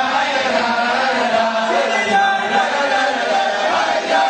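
A group of voices singing a chant-like melody together, steady and unbroken.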